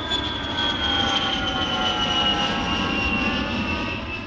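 Airplane engine running, a steady drone with a high whine that falls slowly in pitch.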